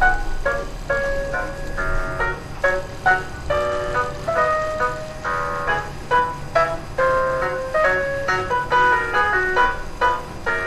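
Instrumental music: a melody of short notes in quick succession.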